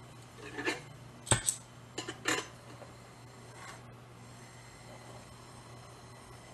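A few short clinks and knocks of metal tools being handled at a metalsmith's bench. They cluster in the first two and a half seconds, the sharpest about a second in, over a faint steady low hum.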